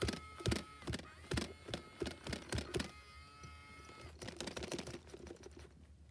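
Light, irregular clicks and taps, two or three a second, from hands handling a plastic toy doll, with a faint steady high tone underneath in stretches.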